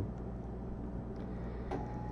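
A steady low hum under a faint background hiss, with a thin steady tone coming in near the end.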